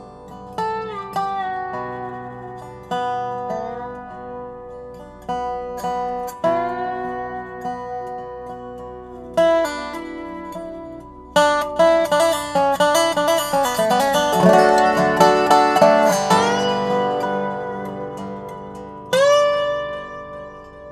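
Dobro (wood-bodied resonator guitar) played lap-style with a steel bar and fingerpicks: picked notes that ring on, some slid into with the bar. About halfway through comes a louder run of fast rolled notes lasting about five seconds, and one more slid note rings out near the end.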